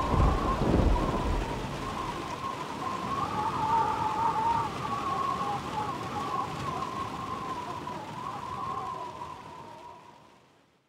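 Produced audio-drama sound effect: a steady, rain-like hiss with a low rumble in the first second and a wavering, whistle-like tone above it, fading gradually to silence at the end.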